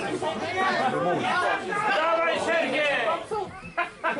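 Spectators chattering, several voices talking over one another. There is a short sharp knock near the end.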